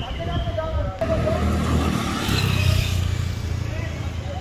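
A motor vehicle engine running under people talking, swelling to its loudest a little past the middle and then easing off, like a scooter or car moving past.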